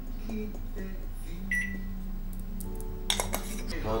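Microwave oven: a short high beep about one and a half seconds in, then a low steady hum, with a run of sharp clicks near the end.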